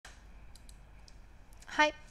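Three faint clicks over a low steady background hiss, then a woman's voice saying "Hi" near the end.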